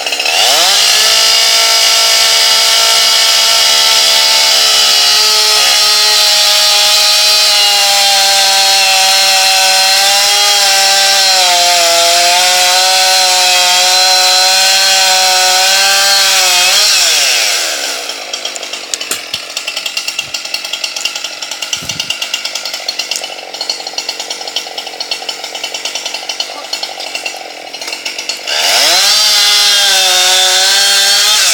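Two-stroke chainsaw revving up and running at full throttle as it cuts into an ash trunk, its pitch sagging a little under load. About 17 seconds in it drops back to idle, then near the end it revs up to full throttle again.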